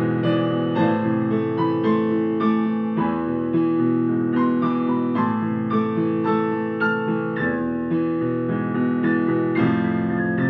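Solo piano playing: a running line of notes, two or three a second, over a held low bass note that changes every few seconds.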